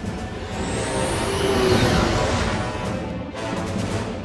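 Film soundtrack: orchestral score under a science-fiction sound effect that swells to a peak about halfway through and then eases off, with a thin high tone climbing as it builds.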